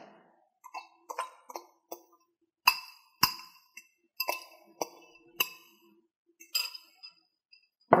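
A spoon scraping and tapping against a small ceramic bowl as mashed banana is knocked out of it: about ten sharp clinks with a short ring, irregularly spaced, the loudest two about three seconds in.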